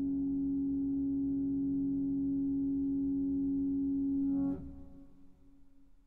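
Grand piano strings set sounding by EBows: a steady, sustained drone on one low pitch, rich in overtones. It cuts off suddenly with a soft click about four and a half seconds in, leaving a faint ringing decay.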